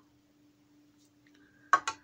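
Quiet handling, then a quick cluster of sharp metallic clicks near the end as a stepper motor is set against its metal mounting bracket on the equatorial mount.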